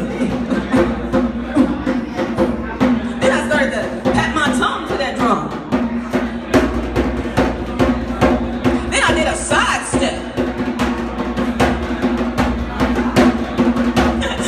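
Djembe hand drum played in a quick, steady rhythm of sharp slaps and tones, with a voice humming a sustained low note under it.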